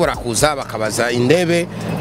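Only speech: a man talking into a handheld interview microphone.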